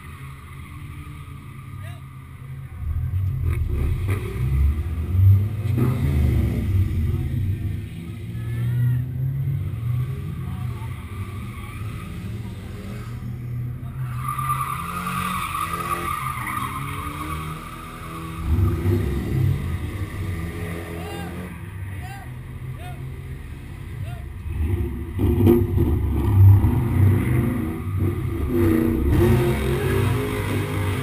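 Drift cars' engines idling at the start line and being revved in several surges, with a stretch of tyre squeal from a car drifting near the middle.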